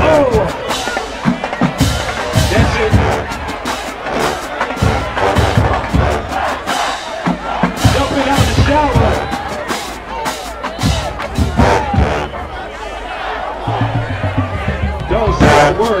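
HBCU marching band playing: brass over drumline strokes, with crowd noise.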